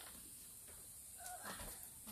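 Near silence: faint outdoor background, with a brief faint high tone a little over a second in.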